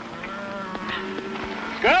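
A herd of cattle lowing, several long moos overlapping one another, with a man's voice starting near the end.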